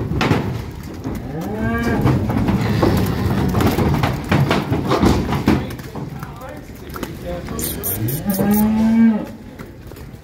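Cattle mooing twice: a short moo about a second and a half in, then a longer, louder one near the end that rises and then holds its pitch. Between and under the calls there is a run of knocks and clatter as the cattle come off the trailer into the pens.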